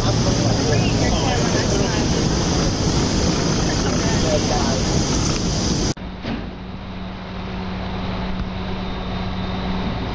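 City street noise with a steady low hum and indistinct voices, cutting off abruptly about six seconds in to a quieter recording with a different steady low hum.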